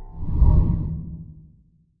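A whoosh sound effect that swells to a peak about half a second in and then fades away to silence, the closing sweep of a channel logo ident.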